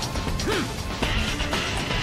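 Crashing impact and blast sound effects from an anime fight scene, heard over background music.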